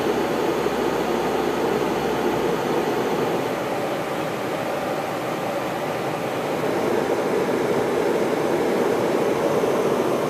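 Steady cabin noise of a Canadair Regional Jet in flight: the even rush of airflow and its rear-mounted jet engines, heard from a passenger seat. It grows a little louder about seven seconds in.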